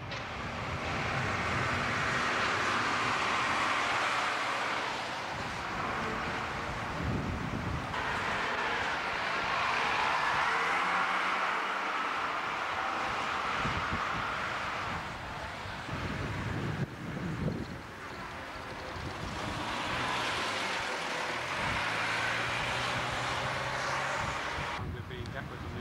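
Street traffic on a camcorder's own microphone: single-decker buses' diesel engines running and pulling away, with wind noise on the microphone. The noise swells and eases in three long surges.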